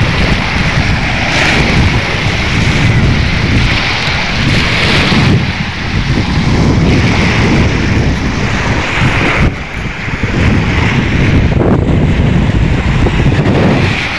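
Strong wind buffeting the microphone with a deep rumble, over small waves washing up and hissing back on a pebble shore in repeated surges.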